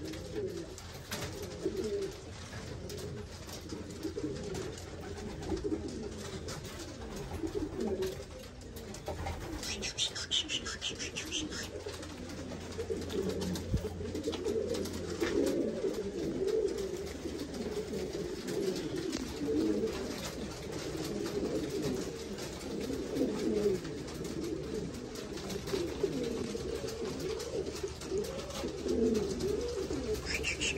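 Several Buchón Gaditano pouter pigeons cooing continuously, their low, wavering coos overlapping, over a steady low hum.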